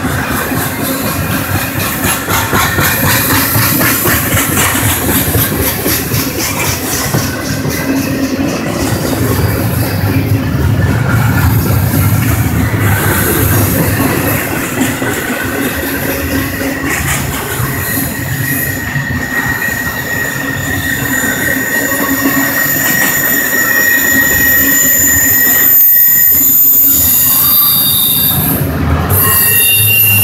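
Double-stack intermodal container train rolling past at close range, its steel wheels running loud and steady on the rails. High-pitched wheel squeal rises over the rolling noise from about the middle on.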